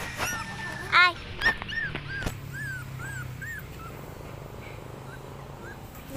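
Puppy whimpering: a string of short high-pitched whines. The loudest comes about a second in, followed by fainter ones about two a second that trail off.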